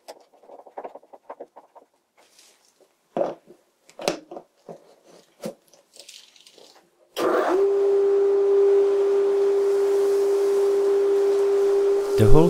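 Light knocks and scrapes as a flexible suction hose is pushed onto a wooden separator's outlet. About seven seconds in, a vacuum motor switches on and runs steadily, a single steady tone over a rush of air, as it draws air through the new Thien-baffle chip separator for its first test.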